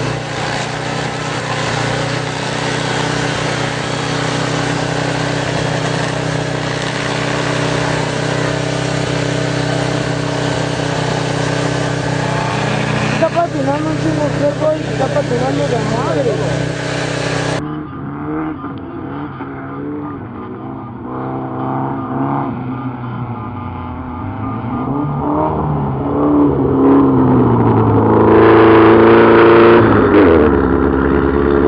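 Race car engines running hard on a muddy off-road track: at first a steady, high-revving drone, then revs rising and falling as the cars work through the mud. After a cut, another car's engine revs up and down, growing loudest near the end as it comes closer.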